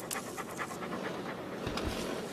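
A dog panting in quick, short breaths, followed by a low, soft thump near the end.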